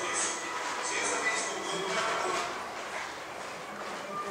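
Indistinct voices over a steady noisy background, a little quieter in the second half.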